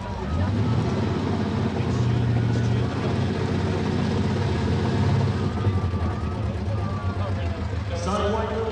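Supercharged Holden Commodore engine held at high revs with the rear tyres spinning through a burnout, the sound a little quieter in the last few seconds as the car rolls out of the smoke.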